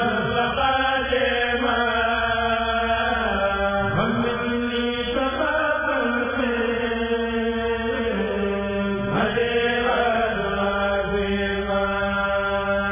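A kurel, a men's choir, chanting a Sufi qasida in unison. The voices hold long steady notes with slow glides between them.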